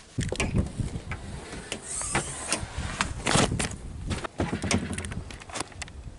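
Handling and movement noise: a run of irregular knocks and clicks, with rustling and a low rumble underneath.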